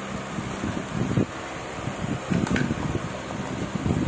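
Hands handling packaging: a plastic wrapper crinkling and cardboard box flaps being moved, in irregular rustles and bumps with a few sharper crinkles in the middle. A steady low hum runs underneath.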